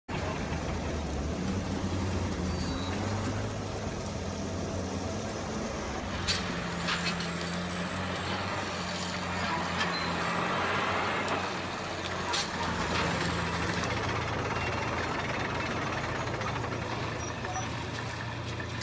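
Engine running with a steady low drone that shifts slightly in pitch, over a rough, noisy background, with a few faint clicks.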